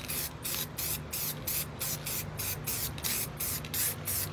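Spray-paint can hissing in a quick run of short bursts, about five a second, as black paint is sprayed around a tea-kettle stencil on a leather jacket.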